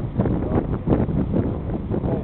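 Wind buffeting the microphone: a loud, gusty rumble that comes up suddenly at the start and keeps surging unevenly.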